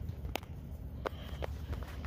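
Quiet outdoor ambience: a steady low rumble, with three light clicks or taps.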